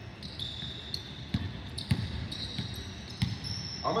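A basketball bouncing on a hardwood court in a large arena: a few separate, irregular bounces.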